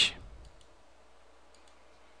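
A few faint computer mouse clicks against a quiet background, with the end of a spoken word at the very start.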